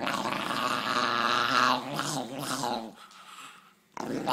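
A small dog growling at another dog nosing its face. It starts with one long, loud growl of about two seconds, then breaks into a few shorter growls before dying down.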